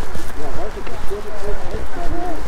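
Several people's voices talking over one another, with footsteps on the path and a steady low rumble of wind on the microphone.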